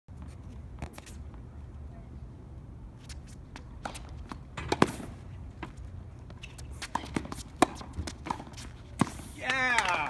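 Tennis rally on a hard court: racket strikes and ball bounces as sharp pops spaced about a second apart, the loudest about five, seven and a half and nine seconds in. A voice cries out near the end as the point finishes.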